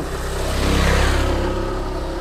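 A motor vehicle passing by off-camera, its sound rising to a peak about a second in and then fading, with the engine note dropping slightly as it goes.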